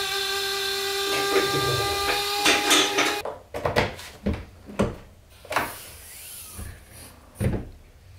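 A steady mechanical hum with several fixed tones for about three seconds, which cuts off abruptly. Then come scattered clicks and knocks as the rear hatch of a Porsche 928 is handled and opened, with a low thump near the end.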